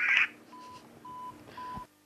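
Telephone beeping after a call: three short, steady beeps of one pitch, about half a second apart, the tone of a line once the other party has hung up.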